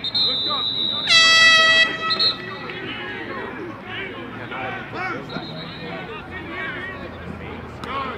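One loud air horn blast, a little under a second long, about a second in, over scattered voices on the field.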